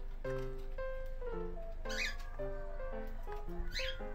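Gentle piano background music, over which an angry cockatiel gives two short, harsh squawks: one about two seconds in and one near the end.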